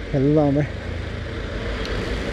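A voice for about the first half second, then the steady running noise of a motorcycle ride: engine hum under a rushing of wind and road noise.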